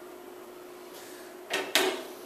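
Two short knocks close together about a second and a half in, from something being handled on the table at the front as the presentation slide is advanced. A steady low hum runs underneath.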